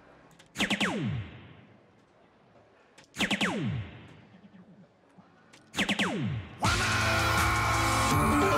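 DARTSLIVE electronic soft-tip dartboard registering three darts about two and a half seconds apart, each hit followed by a falling electronic tone. Near the end the machine's loud Ton 80 award effect and music start, marking three triple 20s for a score of 180.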